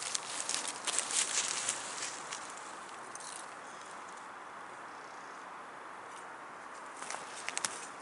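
Small wood-gas camping stove being fed: sticks of wood clicking and scraping against the metal stove as they are pushed into its fire, under a steady hiss from the fire and the heating pot on top. The clicking is busiest in the first couple of seconds, and a few more clicks come near the end.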